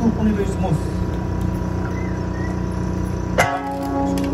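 A voice in the first second over a steady background hum; about three and a half seconds in, a sanshin is plucked sharply and its note rings on, opening the eisa music.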